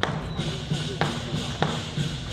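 Three sharp knocks, at the start, about a second in and a little after, over a background of voices.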